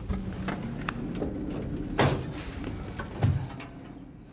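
Rustling and shuffling, with two dull thumps about two seconds in and again just over a second later.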